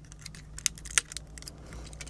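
Small plastic clicks and ticks as the foot and heel parts of a Transformers Cybertron Soundwave action figure are pulled out and moved by hand, with two sharper clicks about two-thirds of a second and one second in.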